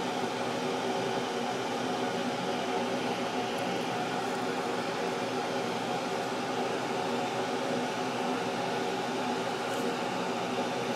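Air-conditioner fan running steadily in the background: an even whir with a few constant hum tones, unchanging throughout.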